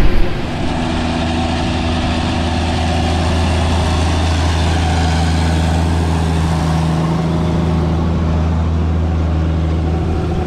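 Versatile 936 articulated four-wheel-drive tractor's Cummins 14-litre six-cylinder diesel running steadily with a low drone while pulling a seven-bottom moldboard plow through the ground.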